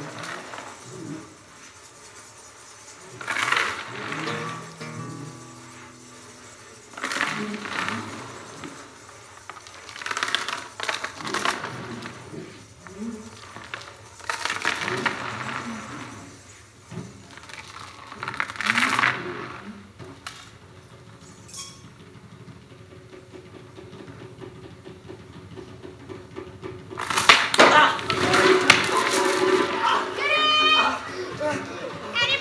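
Background stage music of low held notes, broken every few seconds by loud metallic rattles of a heavy chain dragged and shaken across a wooden stage floor. Near the end comes a louder, longer burst of crowd noise.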